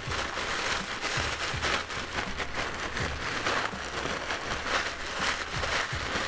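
Saltine crackers being crushed by hand inside a plastic zip-top bag: continuous crinkling of the plastic and crunching of the crackers, a dense irregular crackle.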